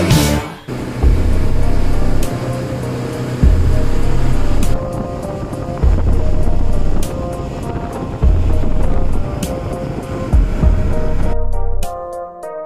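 Background music over the low rumble and wind buffeting of a boat running on open sea. The rumble swells and drops about every two seconds, and it gives way to music alone near the end.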